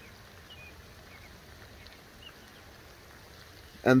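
Faint, steady rush of water from a pond fountain's spray, with a few brief, faint bird chirps.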